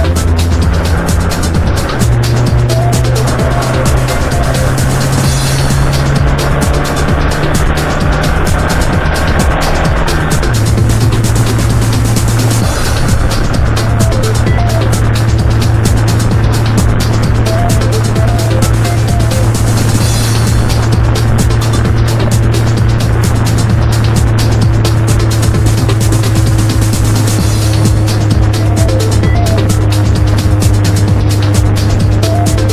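Background music with a steady fast beat over sustained low bass notes that change pitch twice, about two and ten seconds in.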